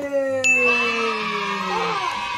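An edited-in celebration sound effect. A bright ding or chime strikes about half a second in and rings on, over a long pitched tone that slides slowly downward.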